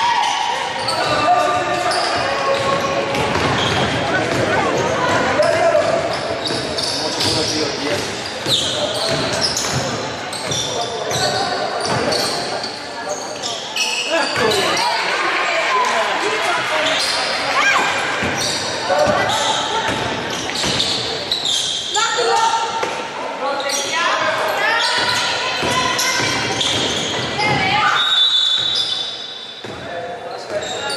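Basketball game sound in a reverberant gym: the ball bouncing on the wooden court under players, coaches and spectators calling out. A referee's whistle sounds briefly near the end.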